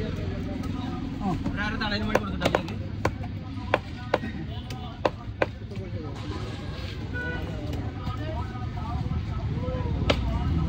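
A large fish-cutting knife chopping ribbonfish on a wooden log block: about eight sharp chops at uneven intervals between two and five and a half seconds in, over voices and street traffic.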